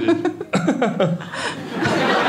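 Audience in a comedy club laughing and chuckling in short bursts, with a brief voice at the very start.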